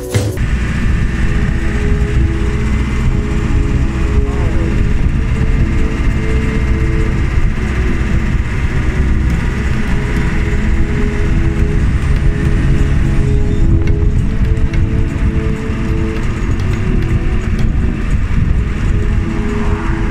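Open-sided safari vehicle driving on a road: steady engine and road noise with heavy low wind rumble on the microphone, faint background music underneath.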